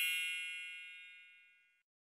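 Bright, bell-like chime of a logo sting ringing out, with many overtones, fading away over about the first second.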